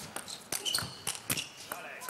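Table tennis ball in a fast rally: sharp clicks of the celluloid ball off the rackets and the table, a few to the second.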